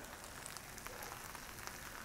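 Faint, steady sizzle and crackle of buttered grilled cheese sandwiches frying on an electric griddle.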